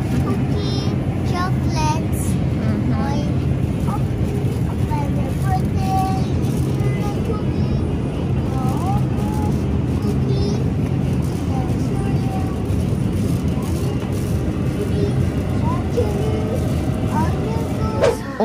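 Shopping cart rolling along a supermarket aisle, its wheels making a steady low rumble, with scattered short bits of voices over it.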